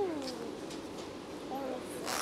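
A young child's voice: the end of a held, sung-out sound sliding down in pitch at the start, then a short higher call that dips down about one and a half seconds in.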